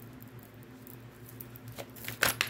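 Faint scattered taps of tarot cards being picked up and handled, with a slightly sharper tap near the end, over a steady low hum.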